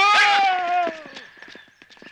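A man's long drawn-out cry without words, held for about a second and sliding slowly down in pitch before fading out, followed by a few faint ticks.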